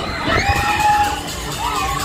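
Riders on a swinging fairground thrill ride screaming: several long, high screams overlapping, the first starting about half a second in and another near the end, over loud ride music.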